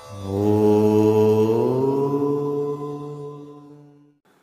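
Intro music sting: one long, deep chanted note that rises in pitch partway through, then fades out near the end.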